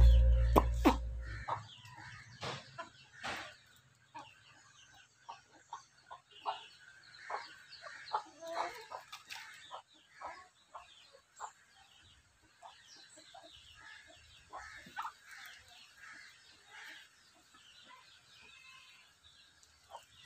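Music fading out over the first second or so, then domestic hens clucking in short, scattered calls, busiest around the middle.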